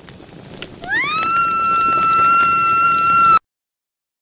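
A long, high-pitched cartoon scream that rises quickly, holds one piercing pitch for about two and a half seconds, then cuts off abruptly, with a rough noise underneath.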